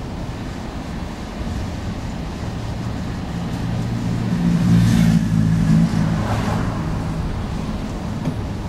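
A motor vehicle engine running over a steady low road rumble. It grows louder from about halfway in, peaks, then eases off again near the end.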